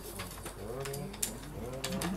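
A man's low voice murmuring under his breath, with paper rustling as he turns a sheet of music.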